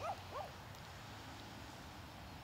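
Two short, high whimpers, each falling in pitch, a fraction of a second apart near the start, over a faint background hiss.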